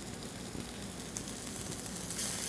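Sous-vide strip steaks searing in a stainless-steel skillet over high heat: a steady sizzle.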